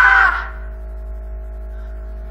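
A loud, harsh laugh of a startled person that stops about half a second in, then a steady held chord of background music.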